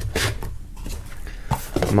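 Cardboard rubbing and scraping as a cardboard insert tray is pushed down into a cardboard box and the lid put on, with a light knock about one and a half seconds in.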